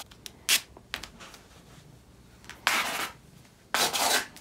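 Clothing rustling and rubbing as layers are pulled on and adjusted at the waist: short swishes about half a second and a second in, then longer ones near the end.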